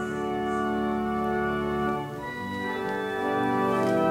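Organ playing slow, held chords, moving to a new chord about halfway through.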